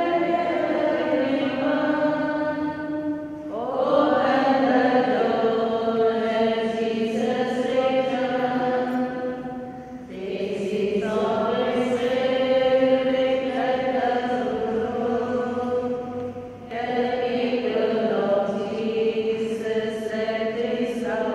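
Voices singing a slow hymn in long, held phrases, with short breaks between phrases about three and a half, ten and seventeen seconds in.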